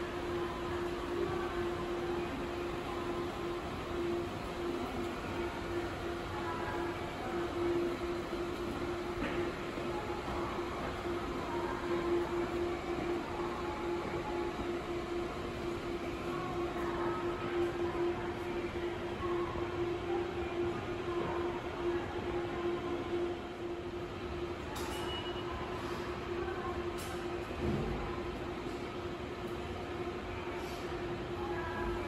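Railway station ambience: a continuous train rumble under a steady low hum. The hum stops near the end, followed by a brief low thump.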